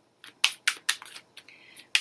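Oracle cards being handled, giving a quick run of sharp clicks and snaps as the cards are drawn from the deck.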